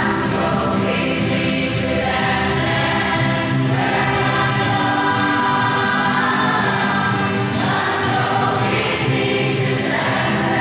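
A small mixed choir, mostly women, sings a gospel hymn in unison, accompanied by a group of ukuleles.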